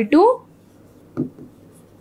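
Stylus writing on an interactive touchscreen whiteboard: faint scratching and tapping as letters are drawn, with one brief louder sound about a second in.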